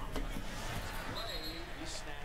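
A stack of trading cards set down on a table with a soft tap near the start, then handled quietly, with another light click near the end. A faint voice sounds in the background through the middle.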